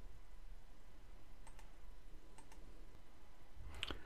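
Quiet room tone with a low hum and a few faint, scattered clicks.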